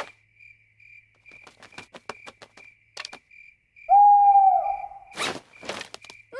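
Night-time cartoon sound effects: crickets chirping in a steady, evenly repeating high pulse, and about four seconds in an owl gives one long hoot. Two short noisy sounds follow near the end.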